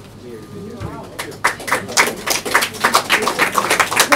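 An audience clapping. It starts about a second in, after a few faint words, and carries on as a quick, uneven patter of claps.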